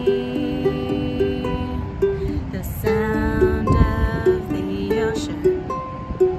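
Ukulele playing an instrumental passage between sung lines, with ringing plucked chords. A gust of wind hits the microphone about four seconds in.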